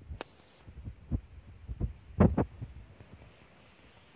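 Irregular low thuds of footsteps on a dirt and gravel track, picked up close by a handheld recorder, with the loudest pair of steps about two seconds in.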